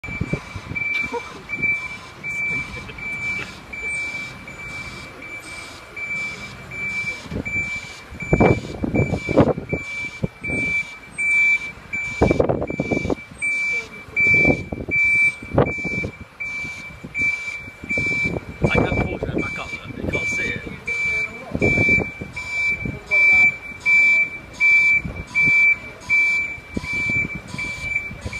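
Articulated lorry's reversing alarm beeping steadily, a little over once a second, as the lorry backs up. Several louder rushes of noise come and go through the middle part.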